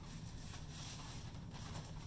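Faint handling noise of foam-padded goalie leg pads being moved and set down, over a low, steady room hum.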